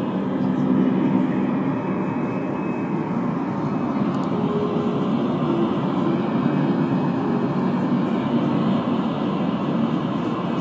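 Portable DAB radio's speaker playing the 'Sound Waves' test channel: a steady rushing noise with a faint low hum underneath.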